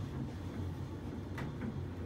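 CN Tower glass-front elevator car descending: a steady low hum of the moving car, with one sharp click about a second and a half in.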